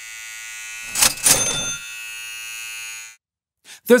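Electric hair clippers buzzing steadily, with a short louder noisy burst about a second in. The buzz cuts off suddenly after about three seconds.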